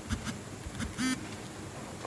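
Faint fingertip taps on a smartphone touchscreen, double-tapping an app-lock screen to unlock the app. A short pitched sound is heard about a second in.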